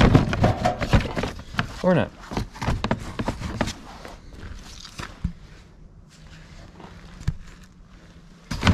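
Hard plastic ATV body panel on a Can-Am Outlander being pulled and flexed by hand, with rapid clicks and scuffs of plastic against the frame, then quieter handling and a couple of sharp snaps later on, as the clips hold the panel.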